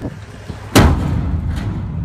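Steel 40-foot shipping container slamming onto the ground as it tips over, one heavy boom about three-quarters of a second in, followed by a low rumble and a lighter knock about a second later as it settles.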